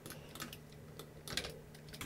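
A few faint computer keyboard keystrokes and mouse clicks over a faint steady low hum.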